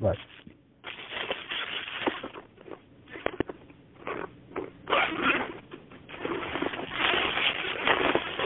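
Rustling, crackling noise from a caller's open line on a telephone conference call, swelling and fading in uneven surges with a few sharp clicks around the middle. It is stray background noise coming through an unmuted phone line.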